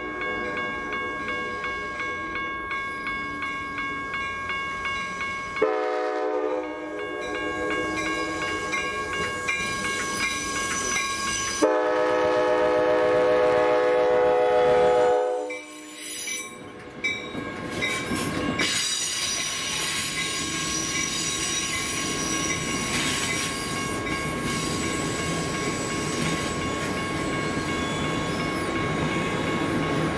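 Amtrak Cascades Talgo train sounding its horn in three long back-to-back blasts, the last shorter and loudest, then crawling over the grade crossing with a few wheel clicks and a steady rolling rumble from the passing cars. The crossing's warning bell rings throughout.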